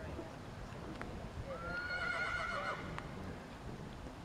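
A horse whinnying once: a quavering call of just over a second that opens on a rising note. It sounds over a steady low rumble.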